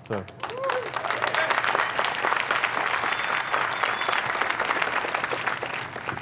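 Audience applauding. It swells within the first second or two, holds, and starts to fade near the end.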